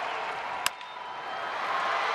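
Ballpark crowd noise, broken about two-thirds of a second in by the single sharp crack of a wooden bat meeting the pitch. The crowd noise dips just after the hit, then swells as the ball is played.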